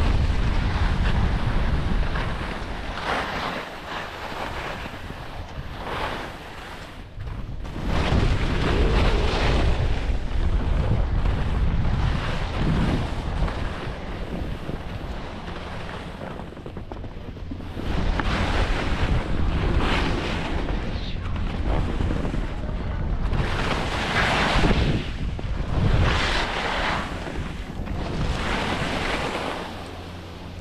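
Wind rumbling on an action camera's microphone while skiing downhill, with swells of hiss every few seconds from the skis scraping and carving across packed snow on the turns.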